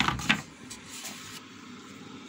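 A quick clatter of knocks and clicks in the first half second, then low room noise with a few faint clicks.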